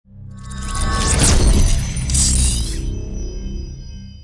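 Cinematic logo sting: a deep rumble swells up, two bright whooshes sweep through about one and two seconds in, and held ringing tones then fade away.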